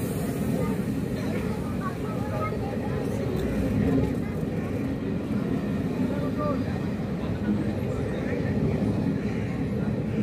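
Indian Railways express train's coaches rolling along the platform, a steady low rumble of wheels on rails, with voices faintly underneath.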